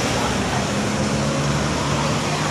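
Steady traffic noise from a busy city street, with a low hum running through it.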